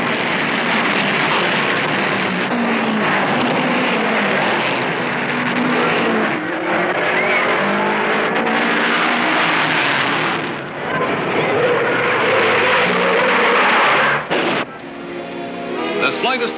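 Open-wheel dirt-track race cars running at speed, their engines loud and steady, mixed with a music soundtrack. The sound dips briefly twice in the second half.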